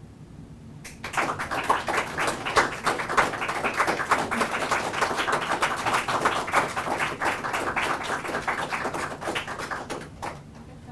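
A small group applauding, starting about a second in with many quick, irregular hand claps.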